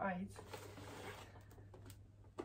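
Faint rustling of red gift wrapping as it is pulled off a boxed present, with a few light clicks near the end.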